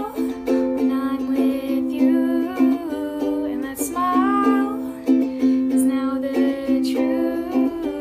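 Music: a song sung by a girl's voice over instrumental accompaniment, the voice sliding between held notes.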